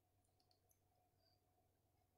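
Near silence: room tone, with a few very faint ticks in the first second.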